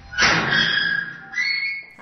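A chain-link prison cage gate being opened: a short rush of noise, then two high steady metallic tones, the second higher and shorter.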